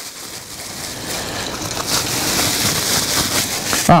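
Plastic packaging rustling continuously as a small item is unwrapped by hand, a hissing rustle that grows steadily louder over a few seconds.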